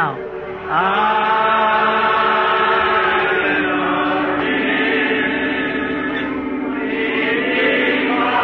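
A church congregation singing a slow hymn in long held notes, changing note about halfway through.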